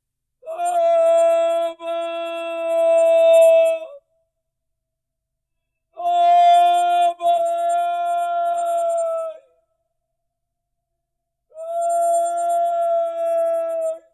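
A man crying out "Father!" three times at the top of his voice to God in prayer, each cry held for three or four seconds at a steady high pitch, with short silences between.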